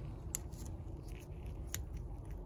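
Two sharp little metallic clicks about a second and a half apart, with a few fainter ticks, over a low steady hum: a small tool or hardware being handled against metal in an engine bay.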